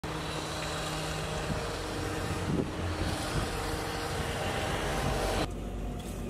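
Outdoor street noise with road traffic running. It cuts off abruptly near the end to a quieter indoor hum.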